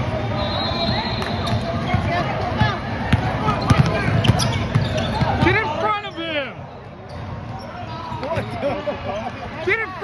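Basketball bouncing on a gym floor in a run of dribbles, with sneakers squeaking sharply on the court a little past halfway and again near the end, over spectators' voices.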